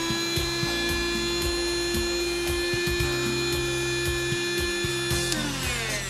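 Sharper Image Steam Wizard handheld steam vacuum's motor running with a steady whine, then winding down in pitch a little after five seconds in, with background music underneath.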